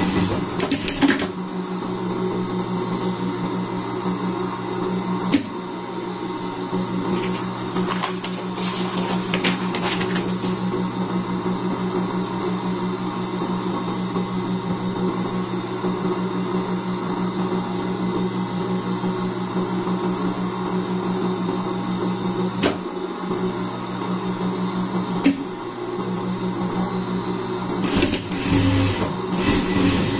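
Industrial lockstitch sewing machine running steadily as it stitches fleece, its motor humming with a rapid even stitching rhythm. A few sharp clicks break in, at about five seconds and again past twenty seconds.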